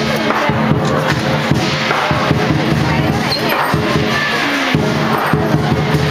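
Chinese lion dance percussion, a big drum with clashing cymbals and gong, playing a loud, steady beat, with crowd voices underneath.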